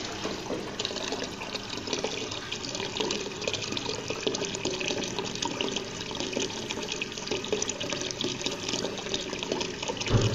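Water running out of a white PVC pipe outlet and splashing into a small garden pond: a steady trickling, splashing flow with fine crackle.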